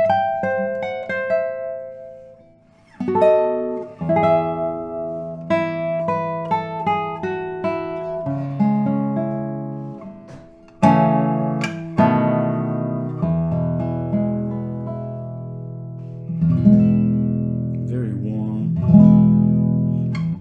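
Solo classical guitar, a 2023 Robin Moyes with a spruce top and radial bracing, played fingerstyle: plucked melody notes over ringing bass notes. The first phrase dies away about two and a half seconds in, playing resumes, pauses briefly about ten seconds in, and goes on with fuller chords.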